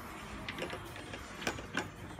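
A few short clicks and knocks as a fold-out side table is clipped onto a camper trailer's slide-out kitchen, the sharpest about one and a half seconds in.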